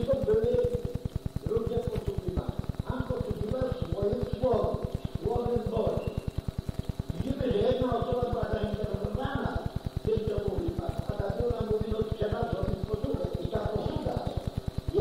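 Speech from an old recording of a spoken Bible talk, running on without a pause, over a fast, even low pulsing in the recording.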